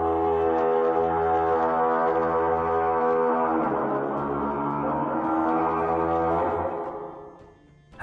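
Sound effect of a deep horn blowing a long, loud note rich in overtones, changing note about three and a half seconds in and fading out near the end; it stands for the Night's Watch sentinel horn sounding a warning.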